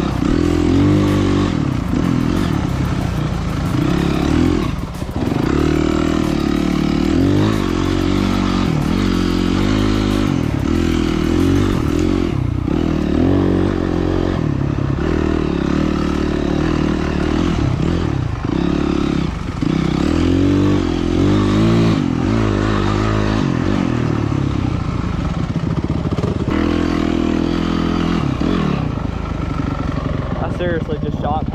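Dirt bike engine heard close up from the bike being ridden, revving up and down constantly as the throttle is opened and rolled off along a twisty woods trail, with a few brief drops as the throttle is shut.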